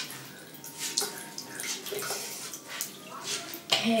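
Bathroom sink tap running, with water splashing irregularly as a doll's hair is rinsed under it.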